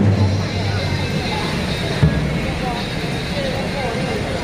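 Street crowd chatter with a vehicle engine running underneath, and a single sharp knock about two seconds in.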